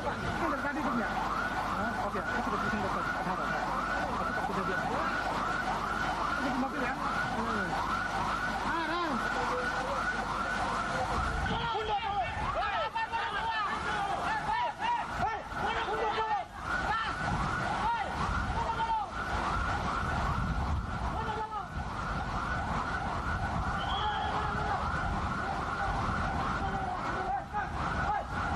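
An electronic siren wails in fast rising sweeps, several a second, without a break, with raised voices over it in the middle.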